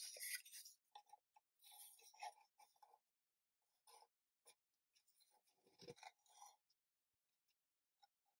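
Near silence with faint, scattered scrapes and light taps of thin plywood pieces being handled, as a trimmed piece is slid into a small wooden case to test its fit. There are two small clusters of these sounds, about two seconds in and again around six seconds.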